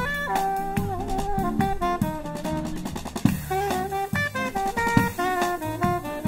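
Live acoustic jazz band playing: a saxophone melody over drum kit and upright double bass, with a quick run of drum hits about halfway through.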